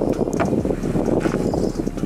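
Wind buffeting the microphone outdoors, a steady rumble. A couple of faint knocks come through it about half a second and just over a second in.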